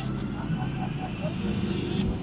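Engine and road noise heard inside a moving car's cabin: a steady low rumble, with a faint high whine slowly rising in pitch.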